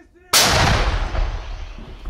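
A 2S9 Nona-S self-propelled 120 mm gun-mortar firing a single round: one sudden loud blast about a third of a second in, followed by a long rumbling echo that dies away.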